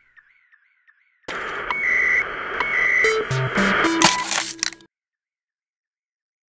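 Short electronic music outro sting. A faint pulsing tail fades out, then a loud, dense burst starts suddenly about a second in, with held high tones and a stepped run of falling low notes. It cuts off abruptly near the end.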